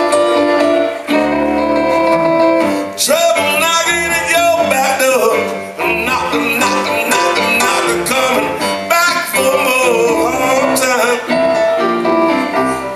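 Small live rock band playing a song: acoustic guitar, electric bass and electric keyboard, with a man singing over it.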